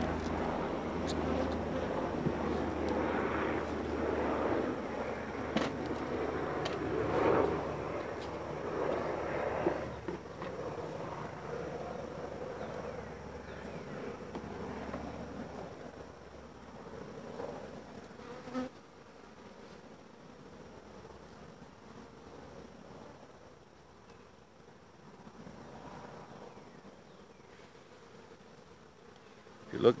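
Honey bees buzzing around an open hive, a dense hum that is strongest over the first ten seconds and fades to a fainter hum in the second half, with a few light knocks.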